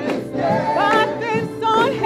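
Gospel choir singing, with a woman's lead voice at the microphone over the choir.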